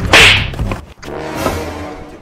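A sharp slap, a hand striking a man on the head, the loudest sound just after the start; a fainter swish follows about a second and a half in, over soft background music.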